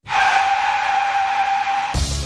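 Car tyres screeching: one steady squeal lasting about two seconds that cuts off suddenly near the end.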